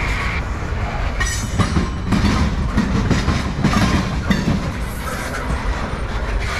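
CSX freight train's loaded centerbeam flatcars rolling past with a steady low rumble. The wheels clatter over rail joints in irregular clusters of clacks, about a second in and again a little past halfway.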